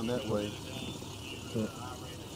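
Faint, muffled speech on police bodycam audio, in short fragments over a steady low background hum.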